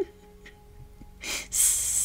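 A woman's breath after a laugh: a short breath about a second in, then a loud hissing exhale near the end, over faint steady background tones.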